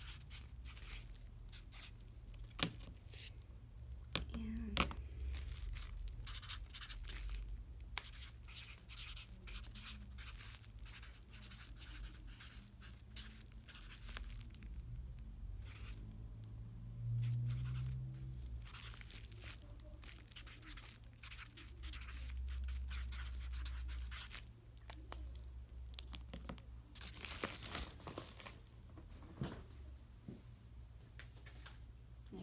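Faint rustling and crinkling of a padded mailer being handled, with scratchy paper noises and a few sharp knocks in the first five seconds, over a steady low hum.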